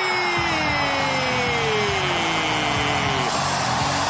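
A stadium crowd roars at a goal. Over it comes a long, drawn-out goal shout from the broadcast, held on one vowel and sliding slowly down in pitch, with a second held voice joining about half a second in.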